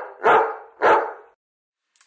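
A large curly-coated dog barking: a quick run of loud barks about half a second apart that stops after about a second.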